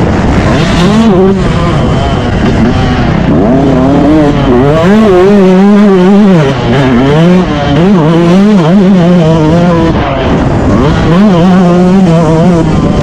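Motocross dirt bike engine heard on board, revving up and dropping back again and again as the throttle is opened and closed over the rough track. The engine note dips briefly about six and a half seconds in.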